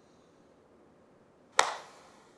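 A single sharp smack made by the performer during a Chen-style tai chi move, sounding once about a second and a half in and dying away in a short echo; otherwise near silence.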